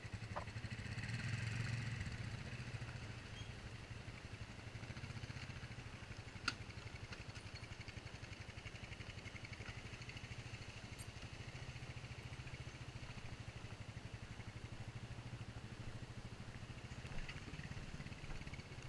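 ATV engine running steadily with a low, evenly pulsing hum, a little louder for the first two seconds. A single sharp click comes about six and a half seconds in.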